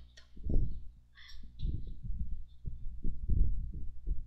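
Low, muffled thumps, irregular and several a second, with a short hiss about a second in.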